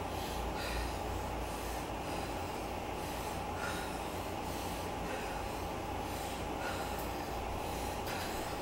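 Heavy breathing during exercise, with short puffs of breath at irregular intervals about a second apart. Under it runs the steady low rumble and hum of an elliptical trainer in use.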